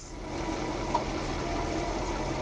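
A car engine idling steadily under an even background hiss.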